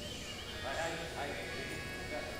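A short animal call, starting about half a second in and lasting under a second, over steady arena background noise.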